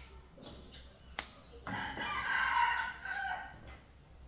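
A rooster crows once, a call of under two seconds that drops lower at its end. Before it come sharp snaps of green beans being broken by hand.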